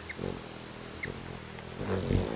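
Hummingbird wings humming as birds hover and dart close by. The hum swells just after the start and again near the end, with two short high chips in between.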